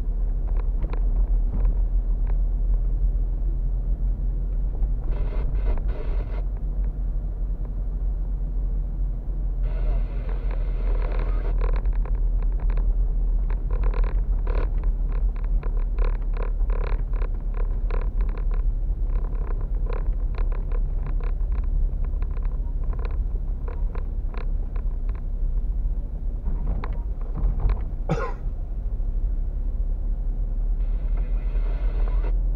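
Car driving on a wet, rough street, heard from inside the cabin: a steady low rumble of engine and tyres with frequent knocks and clatter from the road surface. A brief high-pitched squeak comes about two seconds before the end.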